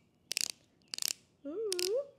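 Three quick bursts of ratcheting clicks, about half a second apart, from the dispensing base of a Maybelline Perfector 4-in-1 Glow makeup stick being worked to push product up to its sponge tip.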